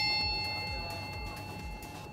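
A struck bell chime ringing out, several clear tones fading slowly away.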